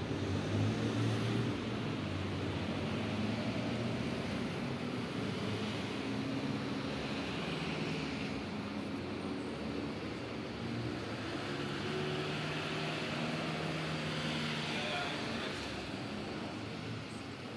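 Street background noise with a motor vehicle's engine running. A brief loud noise comes about halfway through.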